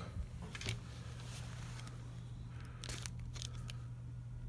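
Hands handling a Nikon digital SLR: faint clicks and rustling from fingers on its buttons, dial and body, with a short cluster of clicks about three seconds in.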